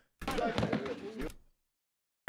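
Faint, muffled voices with a knock or two, then the sound cuts off to dead silence a little over a second in.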